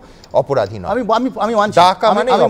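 Men's speech: a heated studio debate in Bengali and Hindi, continuous after a brief pause at the start.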